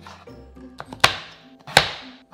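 Crinkle-cutter blade chopping down through raw sweet potato onto a plastic cutting board: two sharp chops, about a second in and near the end, the second the louder, over background music.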